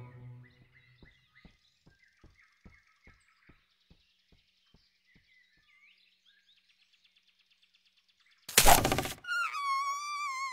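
Cartoon soundtrack effects in a forest scene. A series of faint, evenly spaced ticks fades out over about five seconds, with faint bird chirps. After a few seconds of near silence, a sudden loud burst of noise lasts about half a second near the end, followed by a wavering high tone.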